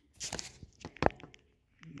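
Handling noise: a run of light clicks and rustles, with one sharp click about a second in.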